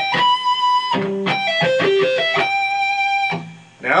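Electric guitar playing sweep-picked E minor and C major arpeggios with pull-offs on the high E string. A held high note gives way to a quick run of single notes, then a second held note fades out about three and a half seconds in.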